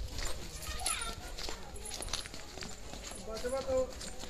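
Footsteps on packed earth, with faint voices in the background and a short voice-like sound near the end.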